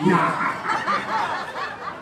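Several people laughing and chuckling together, their voices overlapping.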